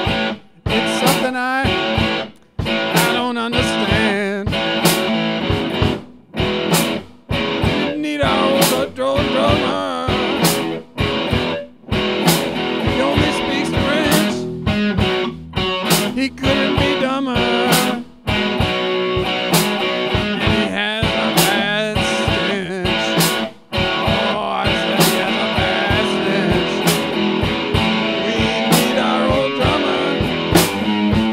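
Guitar-led blues-rock jam: plucked and strummed guitar with wavering, bent notes, played as an instrumental passage.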